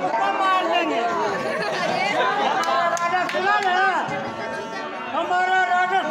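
Men's voices speaking loudly in stage-play dialogue, picked up by a stage microphone, with overlapping chatter. There is a brief lull a little after the middle.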